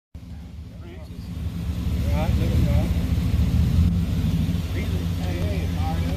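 Pickup truck engine running with a low, steady rumble that grows louder after about a second and a half.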